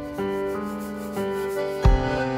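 Live band music: held chords that change twice, with a deep thump near the end.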